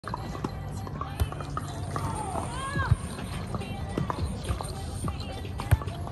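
Sharp slaps of a volleyball being struck by players' hands and arms, a few separate hits with the loudest near the end, over voices in the background.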